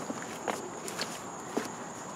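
Quiet outdoor background: a steady high insect trill, with a few faint scuffs or knocks spaced about half a second apart.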